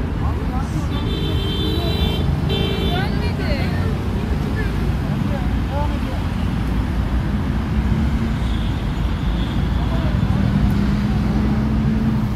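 Road traffic noise with a steady low rumble, heard through a phone microphone; about a second in a steady high tone sounds twice briefly, and from about seven seconds in a low vehicle hum grows.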